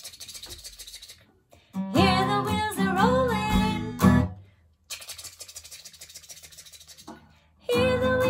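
A woman singing a children's train song with an acoustic guitar strummed under it, broken twice by a fast, soft chugging rhythm that imitates train wheels rolling.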